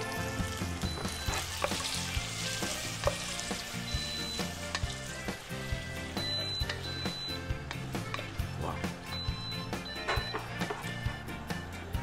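Spaghetti sizzling in garlic and olive oil in a stainless-steel saucepan while it is stirred and tossed with a wooden spoon, with frequent light clicks of the spoon against the pan.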